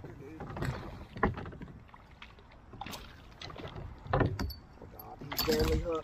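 A hooked fish being fought beside a plastic kayak: a few scattered knocks against the hull, then a splash near the end as the fish thrashes at the surface by the net.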